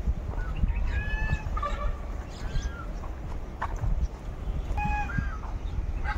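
Birds calling outdoors: a few short, high calls about a second in and again near the five-second mark, over a steady low rumble.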